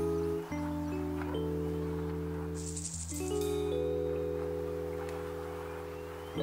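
Background music: gentle held chords over a steady bass, changing every second or two, with a brief high rattle about two and a half seconds in.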